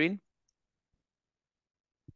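A man's voice finishing a short question, then near silence.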